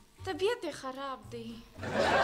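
A voice speaking in short phrases with wide rises and falls in pitch. Near the end a louder, dense background sound swells in.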